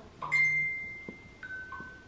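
Two-note chime, like a ding-dong: a high bell-like note rings and fades, then about a second later a lower note sounds.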